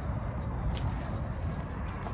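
Steady low rumble of outdoor background noise with no voices, strongest at the low end, with a faint tick or two.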